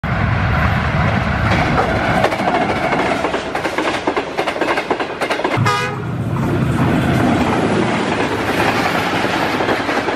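Diesel-hauled passenger trains passing at speed: engine rumble and rapid clatter of wheels over the rails, with a short horn blast about halfway through, then the steady rush of coaches going by.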